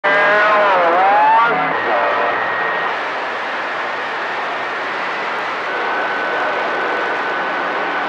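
CB radio receiver on channel 28 hissing with loud band static. A warbling tone dips and rises in the first second and a half, and a faint steady whistle, like a carrier heterodyne, comes in about halfway through.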